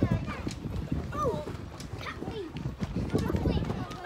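Children bouncing on trampoline mats: repeated soft thuds of feet and bodies landing, with children's high voices calling out between them.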